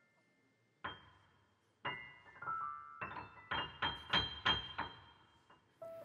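Grand piano keys pressed by a toddler: a single note about a second in, then an irregular run of single notes and small clusters, a few a second, each left to ring briefly.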